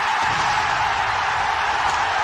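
A steady, even rushing noise with no tune or voice in it, loudest in the upper-middle range.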